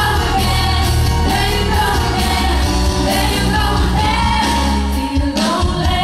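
A woman singing a pop song into a handheld microphone over a loud band backing with heavy bass; the bass drops away briefly a little after five seconds in.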